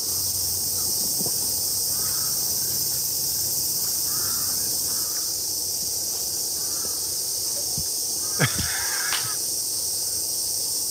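A steady, loud chorus of cicadas fills the high range, with faint crow caws a few times in the background. A sharp knock sounds near the end.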